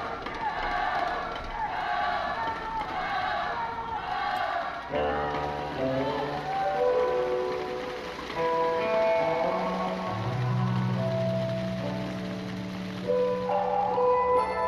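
Voices in the hall for the first few seconds, then instrumental accompaniment music for a taiji sword routine starts about five seconds in, with slow held melodic notes over a low sustained tone.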